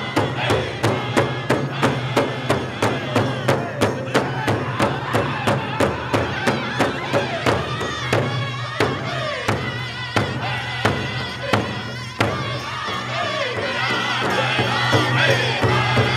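Cree powwow drum group: several men strike a large shared hide drum together in a steady beat, about five beats every two seconds, while singing in high voices with women's voices joining behind. About twelve seconds in the level dips briefly, then the singing comes back louder.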